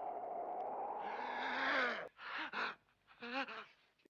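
A man's long, drawn-out cry as he is pulled down and falls, its pitch sliding down before it breaks off about two seconds in, followed by two or three short gasping breaths.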